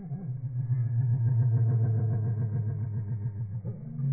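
Australian magpie calls slowed down and pitched far down, heard as a deep, rapidly pulsing drone with a buzzy edge. It weakens a little near the end.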